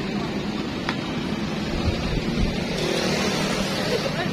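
A motor vehicle engine running steadily close by, with one sharp click about a second in.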